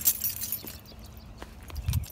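Car keys clinking as they are handled: a brief jingle at the start, then a few light, scattered metallic clicks.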